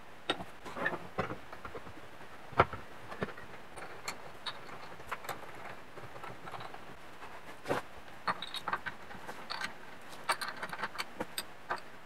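Machined aluminium parts and hand tools handled on a workbench during assembly of an engine cradle mount: scattered light clicks, taps and metal-on-metal knocks, with two louder knocks about a third of the way in and again past the middle.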